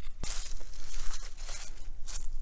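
Footsteps crunching and rustling through dry grass and leaves as a person walks, an irregular scratchy noise with no steady rhythm.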